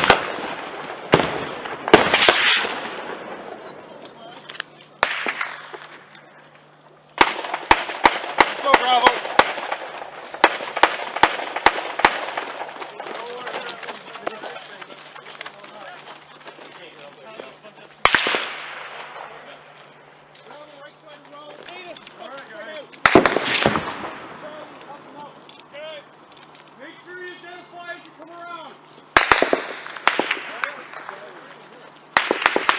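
Small-arms gunfire during a firefight: scattered single shots, each with a long echoing tail, and a quick string of about a dozen shots a few seconds in.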